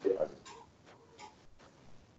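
A brief spoken sound at the start, then a few faint, scattered clicks over a low background.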